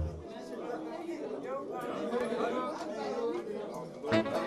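Background chatter of several indistinct voices talking at once.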